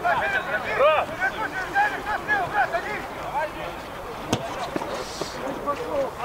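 Indistinct voices of players calling out across a football pitch, the calls coming thick in the first few seconds and then thinning out. A single sharp knock sounds a little over four seconds in.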